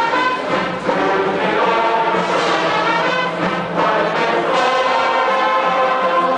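Ohio State marching band brass playing sustained chords together with a large men's glee club singing, heard from high in the stadium stands.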